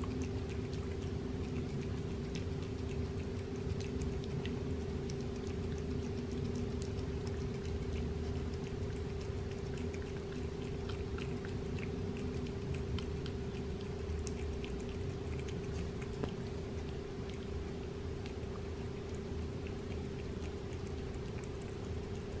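Cat licking and lapping soft chicken baby food off a paper plate: a run of small, irregular wet clicks, over a steady background hum.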